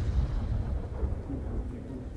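Low rolling rumble of a thunder sound effect in a dance soundtrack, slowly fading.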